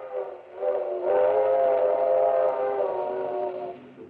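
Steam locomotive whistle blowing one long multi-note chord as a radio sound effect. It dips briefly about half a second in, swells again, and falls away near the end.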